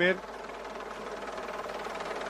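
Steady engine noise from the motor vehicles that accompany the race, heard on the live broadcast's background sound, with the tail of a commentator's word at the very start.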